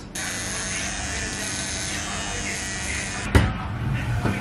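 An electric hair clipper buzzing steadily, then a single sharp click about three seconds in.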